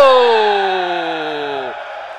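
A male commentator's long drawn-out shout on one held vowel, sliding down in pitch and fading before breaking off near the end: the excited call of a goal in a futsal match.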